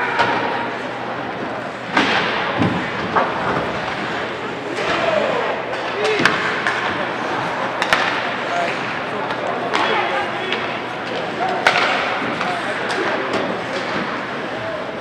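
Ice hockey in play in an indoor rink: skates scraping on the ice and several sharp clacks and thuds of sticks, puck and boards, over crowd chatter and a few shouts.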